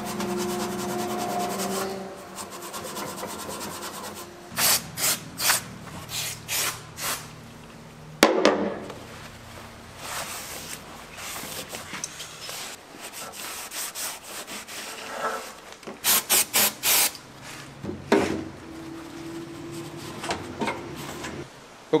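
Scouring pad and rag scrubbing a steel flange's gasket face in runs of quick back-and-forth strokes, cleaning it smooth before liquid gasket goes on. There is a single sharp metallic knock about eight seconds in.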